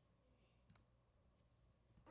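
Near silence: room tone with three faint, sharp clicks spread about two-thirds of a second apart.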